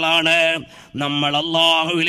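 A man chanting in a long-held, ornamented voice, a devotional line sung rather than spoken, in two drawn-out phrases with a brief pause just after half a second in.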